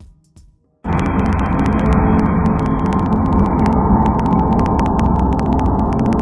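Loud electronic dance music from a festival stage, heard through a phone microphone and crackling with many sharp clicks. It starts abruptly about a second in.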